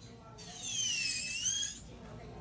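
Electric nail drill (e-file) whining loudly for about a second and a half as its bit works an acrylic nail, its high pitch dipping and then rising again.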